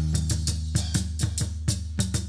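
Live band music in an instrumental break: a drum kit keeps a fast, even beat of kick, snare and cymbal over a steady electric bass line, with no singing.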